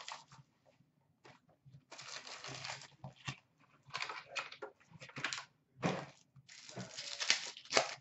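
A hockey card box and its foil-wrapped pack being opened by hand: crinkling and tearing of the wrapping in three bursts, the last and longest near the end.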